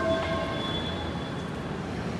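Delhi Metro train running through the station: a steady rumble, with a few high tones that come in at the start and fade away within about a second and a half.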